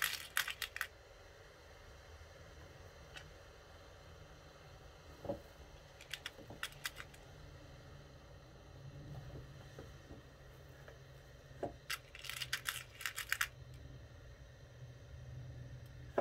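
Metal pins clinking as a hand picks them out of a small pin dish, in short clusters of light, sharp clicks near the start, around six seconds in and again around twelve to thirteen seconds in.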